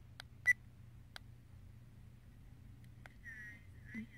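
Budget action camera giving a short electronic beep as one of its buttons is pressed, with a few light clicks around it.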